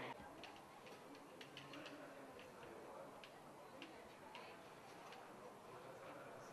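Faint, irregular light clicks, a few a second, over quiet room tone.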